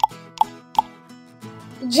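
Three short pop sound effects, evenly spaced a little under half a second apart, over soft steady background music.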